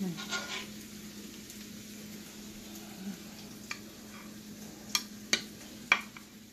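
Food quietly sizzling in a pan on the stove over a steady low hum. In the second half come a few sharp clicks of metal tongs against a glass baking dish as breaded chicken breasts are set in it.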